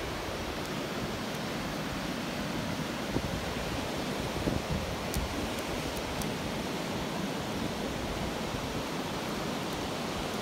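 Ocean surf: waves breaking and washing up the beach, a steady rushing noise.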